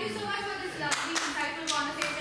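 Audience clapping, with a woman's voice speaking over the applause.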